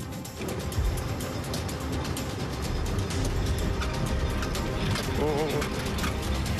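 Engine of a Bombardier tracked snow vehicle running under load as it drags a gill net frozen into the ice, with rapid mechanical clicking and rattling throughout. Background music plays over it.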